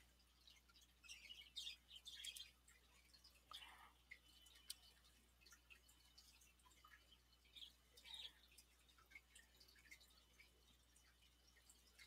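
Near silence: faint room tone with a few scattered soft ticks and clicks.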